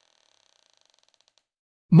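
A faint creak: a run of quick, evenly spaced clicks that slow and fade out after about a second and a half. Narration begins right at the end.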